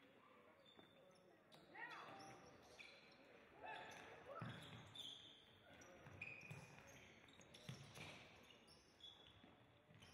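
Faint indoor futsal play in a large hall: the ball being kicked and bouncing on the court, and players' shoes giving short rising squeaks on the hard floor several times, with faint voices.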